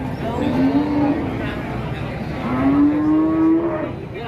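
Cattle mooing twice: a short low moo about half a second in, then a longer moo that rises slightly in pitch from about two and a half seconds until just before the end.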